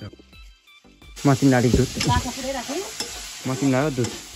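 Food frying in a wok, a steady sizzle with a ladle stirring, starting abruptly about a second in, with a person's voice over it.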